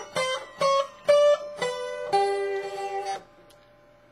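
Acoustic guitar in open G tuning played with a metal slide: a short run of about five single slid notes, then a held chord that is cut off a little after three seconds in.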